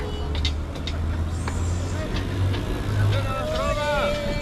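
Road traffic: a motor vehicle's engine running close by, its low hum rising in pitch in steps through the second half. A voice comes in near the end.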